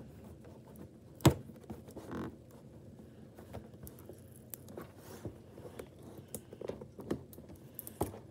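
A plastic clay knife scraping and picking at packing tape on a cardboard toy box: scattered small scrapes and ticks, with one sharp click about a second in.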